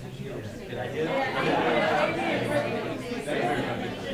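Indistinct chatter: several people talking at once off-microphone, loudest about one to three seconds in.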